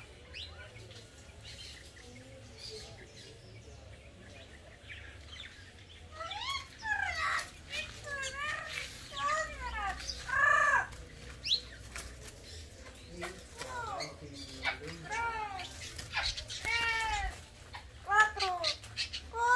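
Green parrot calling: a run of loud, arching, squawky calls that starts about six seconds in and keeps coming, several a second at times, until the end.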